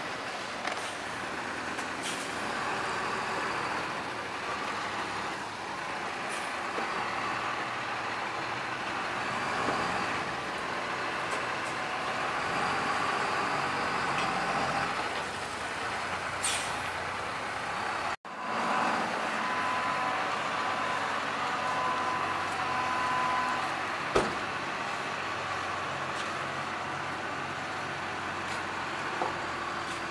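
A large coach bus's engine running as the bus moves slowly past at close range. The sound drops out for an instant about 18 seconds in, and a faint steady high whine runs for a few seconds after that.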